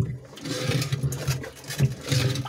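A metal can being moved through shallow water against the bottom of a turtle tank: a continuous low, rough buzzing scrape with water sloshing.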